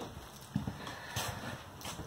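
Footsteps on a travel trailer's floor: a handful of light knocks spread through the two seconds.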